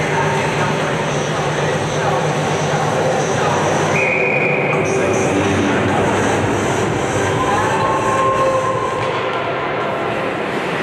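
Steady, loud ice-arena noise with indistinct voices of players and spectators, and a brief high steady tone about four seconds in.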